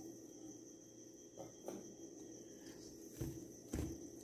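Quiet room tone with a thin steady high whine, then two soft low knocks near the end as a hand begins mixing flour and warm water in a steel bowl.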